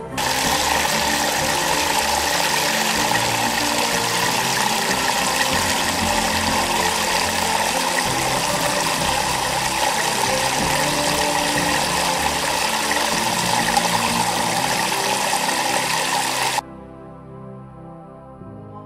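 A loud, steady rushing noise over soft background music. The rushing cuts off suddenly near the end, and the music carries on.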